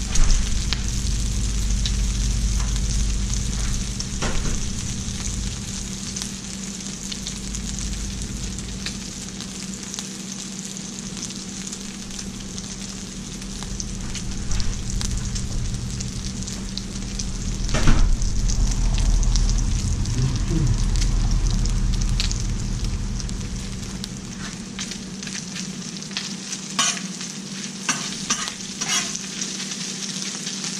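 Chorizo refried beans and bacon sizzling steadily on a hot Blackstone flat-top griddle, with a low rumble under the sizzle that fades and returns. A few sharp taps come near the end.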